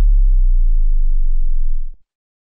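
A single deep synth sub-bass note, the last note of an electronic trap/house track, held and slowly fading with nothing else playing, then cut off abruptly just before the end.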